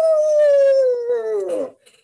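A woman's voice imitating a gust of wind: one long "woooo" that rises briefly, then slides slowly down in pitch and stops shortly before the end.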